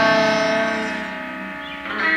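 Instrumental passage of a raw late-1970s rock recording: a guitar chord rings out and fades away, and a new chord is struck near the end.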